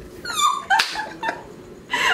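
High-pitched, breathless laughter from women, with squeaky falling squeals in the first half second and a sharp burst of laughter a little before the middle.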